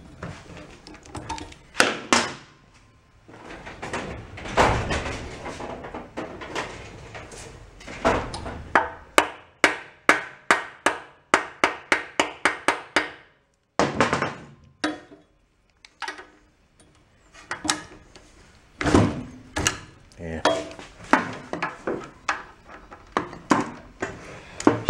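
A hammer striking the metal pump housing of a pressure washer again and again, trying to knock the pump loose from the engine shaft. The blows come in bursts, with a quick run of about three a second through the middle.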